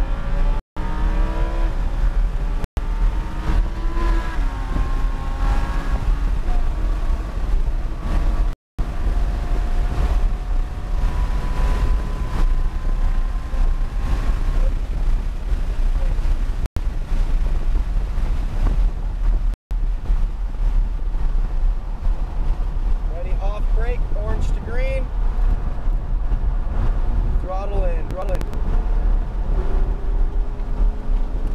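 Lamborghini Huracán LP610-4's 5.2-litre V10 heard from inside the cabin, accelerating hard with its pitch rising through the gears, over heavy road and wind rumble. From about two-thirds of the way in, the engine gives short rising-and-falling rev blips as the car brakes and downshifts. The sound drops out completely for an instant five times.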